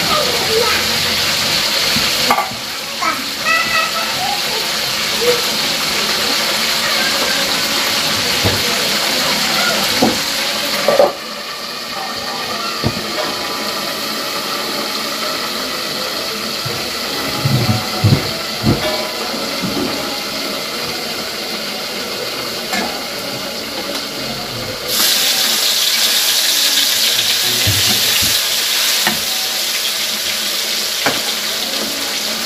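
Oil sizzling in metal woks over gas burners, with occasional clinks of metal cookware. The sizzle drops abruptly about eleven seconds in and comes back louder near the end, as spice paste is stirred into the hot oil with a spatula.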